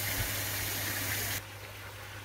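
Pond filter equipment running: a steady rush of moving water over a low, even pump hum. About one and a half seconds in the rushing drops away suddenly, leaving a quieter hum.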